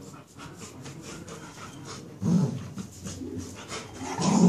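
A beagle and a cocker spaniel play fighting: panting and scuffling of paws and bodies on a tiled floor. One dog gives a short, louder vocal sound a little past halfway.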